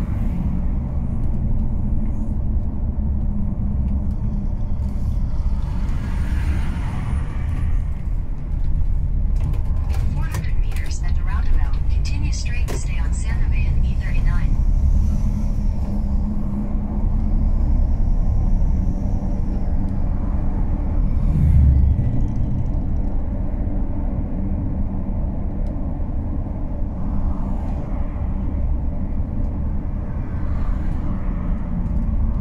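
Steady low engine and road rumble heard from inside a moving vehicle, with a run of sharp clicks and short high tones around the middle and a brief louder low swell a little later.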